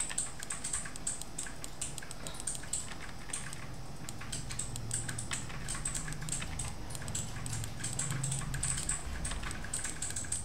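A steady run of light clicks from a computer keyboard and mouse, several a second, over a low background hum.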